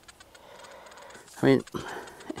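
A faint, quiet stretch with a few light ticks, then a man says a word or two.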